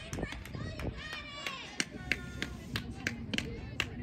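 High-pitched voices of players and spectators calling out and cheering, mixed with a scattering of sharp handclaps.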